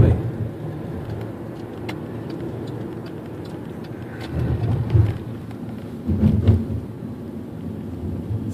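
Road and engine noise heard inside a moving car: a steady low rumble, with two brief louder surges of low rumble about four and six seconds in.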